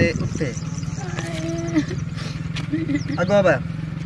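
A young woman's pained voice: one long drawn-out moan about a second in and a short cry past three seconds, from her hurt foot. A steady low engine-like drone runs underneath.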